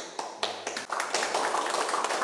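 A small group of people applauding. It starts with a few scattered claps and becomes steady clapping after about half a second.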